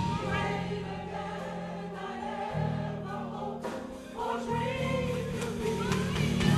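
Gospel choir singing a soft passage over sustained low chords, which change about two and a half seconds in and again near four and a half seconds.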